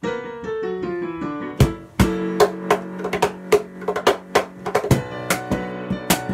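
Digital piano playing a descending run of notes alone. About a second and a half in, a cajón joins with sharp slapped strikes in a steady beat under the piano chords.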